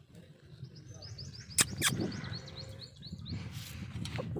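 A small bird chirping in a quick run of short, high notes, about five a second, with two sharp clicks about halfway through.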